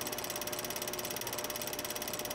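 Film projector sound effect running: a rapid, even clatter of clicks with a faint steady hum under it.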